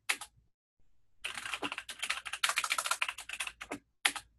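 Typing on a computer keyboard: a couple of keystrokes at the start, then a quick run of keystrokes lasting about two and a half seconds as a terminal command is typed.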